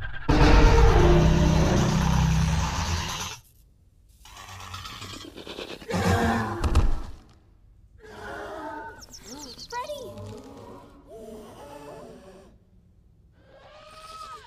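Animated film soundtrack: a loud crash with a deep rumble for the first three seconds or so, a second shorter burst a few seconds later, then music with wordless vocal sounds such as gasps.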